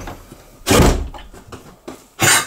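A door being shut, closing with a single heavy thump a little under a second in that dies away quickly.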